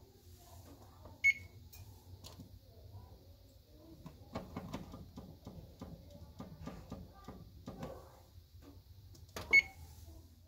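GE electric range's electronic oven control beeping as its touch keys are pressed: one short beep about a second in and another near the end. A faint low hum runs underneath.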